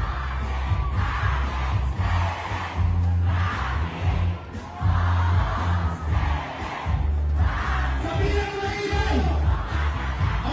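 Live rap performance through a PA: a heavy bass beat with a large crowd shouting along in bursts about once a second, and a rapper's voice on the microphone near the end.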